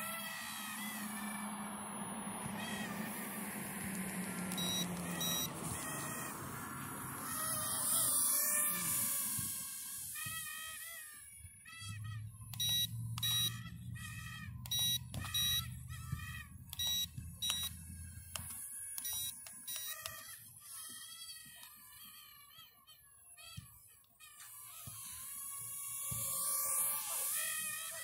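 Small toy quadcopter's propellers whining high, swelling and rising in pitch about a third of the way in and again near the end. In between come short, repeated high chirps or beeps.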